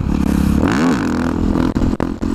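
Supermoto motorcycle engine running under throttle. It revs up sharply and falls back about a second in as the front wheel lifts into a wheelie, then settles into a steady drone.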